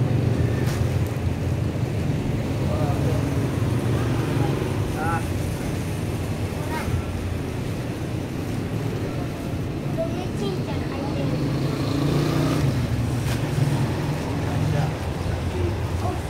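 A steady low rumble throughout, with a few light crinkles from plastic bags of fishing lures being handled.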